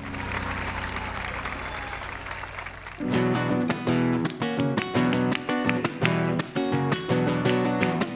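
Audience applauding at the end of a song. About three seconds in, a guitar starts a fast, rhythmic strummed accompaniment that runs on.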